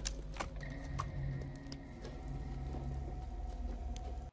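Film soundtrack of lions heard in the dark: a low, rumbling growl under a faint held high tone, with a few sharp clicks near the start.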